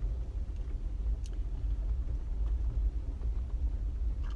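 Steady low rumble of a Jeep Wrangler Rubicon driving on a rough trail on aired-down tyres, heard inside the cabin, with one faint tick about a second in.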